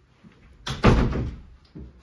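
A door slamming shut: one loud bang a little over half a second in, dying away within about a second.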